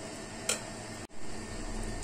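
A steel spoon stirring thick wheat-flour and banana batter: soft squishing, with one sharp click about half a second in, over a steady background hum.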